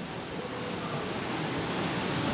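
A steady hiss of background noise with no clear pitch or rhythm, slowly growing louder.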